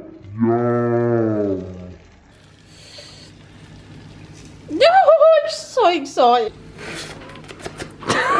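A man's long, low hummed 'mmm' of appreciation, followed after a quiet pause by a short higher-pitched, sing-song vocal exclamation and a few light clicks near the end.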